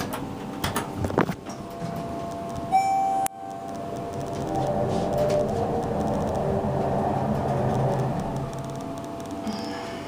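Schindler MT 300A elevator arriving at a landing: a single electronic chime sounds briefly about three seconds in and cuts off sharply, then a low rumble of the elevator's machinery and doors swells and fades over about six seconds.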